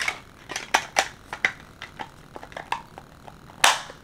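Irregular plastic clicks and taps from a small portable photo printer being handled as its paper pack is loaded and its cover put back on, with one louder, brief scrape near the end.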